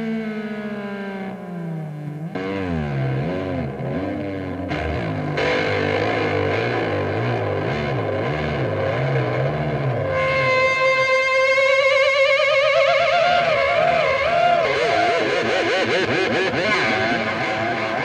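Distorted electric guitar playing sustained notes through effects. The notes first slide down in pitch, then warble up and down with a wide wobble from about ten seconds in.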